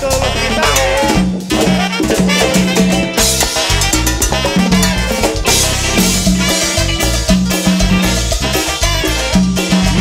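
Live cumbia band playing an instrumental stretch with a steady dance beat.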